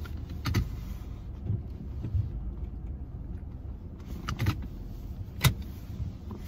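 Steady low engine and road rumble heard inside a car's cabin, with a few short sharp clicks: one about half a second in, a couple around four and a half seconds, and a louder one near the end.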